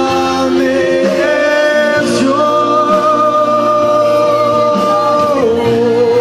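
Christian worship song with a singer over instrumental accompaniment; the voice holds one long note through the middle, then steps down in pitch near the end.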